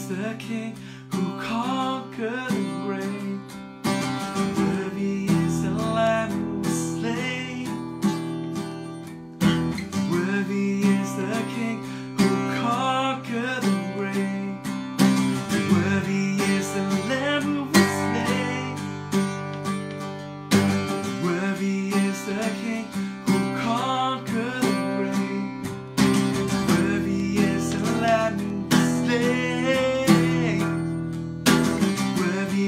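A man singing a worship song while strumming chords on a Takamine acoustic guitar.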